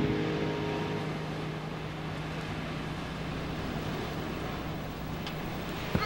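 Steady low rumble and hiss of a car's interior, with background music fading out in the first second.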